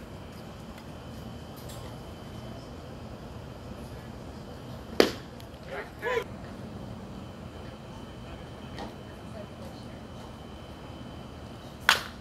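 Two sharp pops of a pitched baseball smacking into the catcher's mitt, one about five seconds in and one at the very end, over a steady low background murmur. A short shout follows the first pop.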